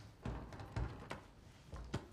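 A few soft, low thuds and one brief sharp click over quiet room tone.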